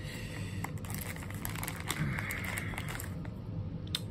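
Hands handling board-game components: soft rustling with scattered small clicks as cards and cardboard tokens are moved and picked up.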